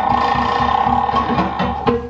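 Live band music: a held, buzzy note takes over for about a second and a half, then the rhythmic plucked strings and hand drum come back in near the end.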